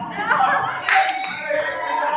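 People's voices talking and calling out, with a few sharp hand claps, the clearest about a second in.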